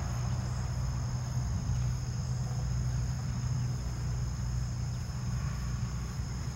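A steady, unbroken high-pitched insect trill, typical of crickets, over a low steady hum.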